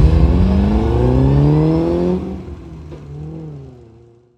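A 1950 Škoda Sport racing car's four-cylinder engine accelerating away, its pitch climbing, then dropping about two seconds in as it changes up a gear and climbing again. It fades steadily as the car draws away.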